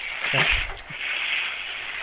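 A 2-liter bottle of Diet Coke erupting after Mentos are dropped in, heard over a phone line: a steady fizzing hiss of foam spraying out of the bottle.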